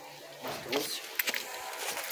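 A hand scraping and scooping loose, stony garden soil: short gritty scratches and a few small clicks of grit and pebbles, starting about half a second in.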